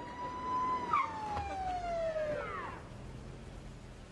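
Police car siren sounding briefly: a single wail rising, then falling away over about two seconds, with a short yelp about a second in.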